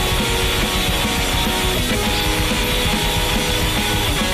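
Rock music playing at a steady level, with guitar and drums.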